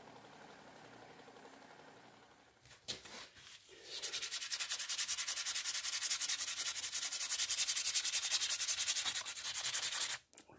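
Hand sanding a knife with a sheet of sandpaper: quick, rhythmic back-and-forth rubbing strokes that start about four seconds in, after a quieter stretch.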